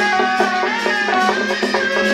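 Instrumental music: a stepping melody over drums and percussion.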